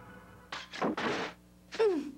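Cartoon soundtrack effects over faint background music: a burst of sudden impact sounds (a thunk) about half a second in, then near the end a short sound that falls in pitch.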